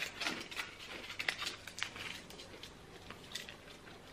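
Foil wrapper crinkling as a chocolate hazelnut praline is unwrapped by hand: a run of small crackles over the first two and a half seconds, then quieter with one more click.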